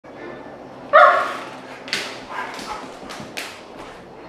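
A dog barks loudly once about a second in, followed by several shorter, sharper sounds, in play between two young male dogs.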